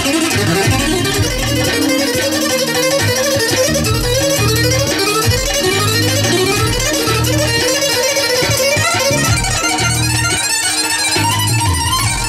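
Live dance music played loud through PA speakers: a synthesizer keyboard and a guitar play fast, repeated rising melodic runs over a pulsing bass beat.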